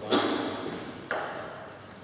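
Two sharp knocks of a table tennis ball, about a second apart, each with a short ring after it; the first is the louder.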